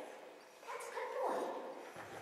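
Australian Shepherd whining, two short high-pitched calls in quick succession.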